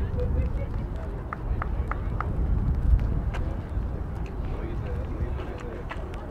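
Distant, indistinct voices of players and spectators over a steady low rumble of wind on the microphone, with four short high pips in quick succession about a second and a half in.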